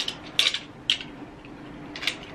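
Sharp plastic clicks from a GoPro monopod grip as its fold-out mini tripod legs and joints are worked by hand, three or four separate clicks spaced unevenly.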